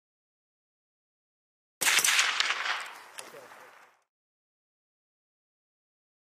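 A single sniper rifle shot that starts abruptly about two seconds in, its report rolling and echoing as it fades away over about two seconds.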